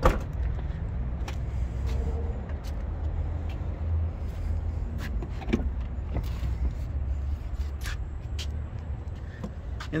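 The power tailgate of a 2020 BMW X5 finishing its close and latching shut with one sharp thud at the very start. After it a steady low rumble runs on, with scattered light clicks and knocks as a rear door is opened about halfway through.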